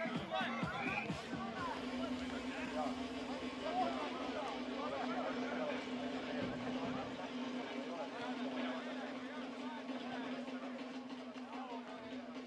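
Players and spectators talking and chattering over background music, with a steady low hum underneath.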